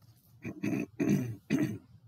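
Three short, throaty vocal bursts from a man, about half a second apart.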